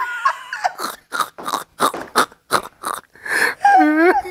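A woman laughing hard. A high-pitched voiced laugh turns into a quick run of breathy huffs, about five a second, and another voiced laugh rises and falls near the end.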